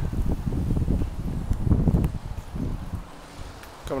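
Wind rumbling and buffeting on a handheld camera's microphone, an irregular low rumble that eases off about three seconds in.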